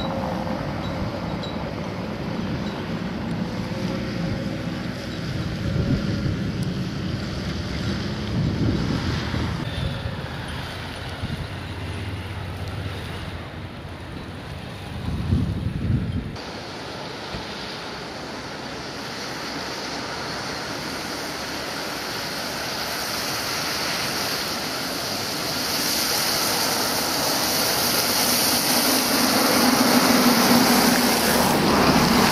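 Engine of a camouflaged Mercedes SLK prototype running and changing pitch as the car drives by, for about the first half. After an abrupt cut, a steady hiss of tyres on a wet road and wind grows louder toward the end.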